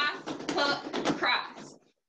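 A person's voice speaking. The words are not made out, and the voice cuts off shortly before the end.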